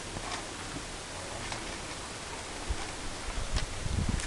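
Steady wind noise on the microphone outdoors, with a few faint clicks and low thumps in the second half.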